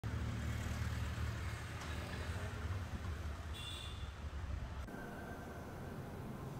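Street ambience dominated by a steady low rumble of road traffic, with a brief high squeak about three and a half seconds in. About five seconds in it cuts abruptly to quieter indoor room tone with a faint steady high tone.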